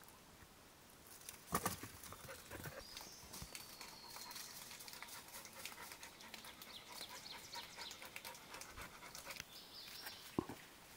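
A dog panting softly, with many light clicks and scuffs and a sharper knock about a second and a half in.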